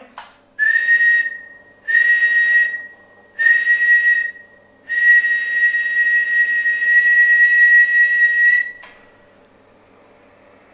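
A person whistling one steady high note, three short whistles of about a second each, then one long whistle of about four seconds that stops near the end. The whistle is the test signal keying the ICOM 7300 to drive the Ameritron AL-811H linear amplifier to full output, around 800 watts on the whistle peaks.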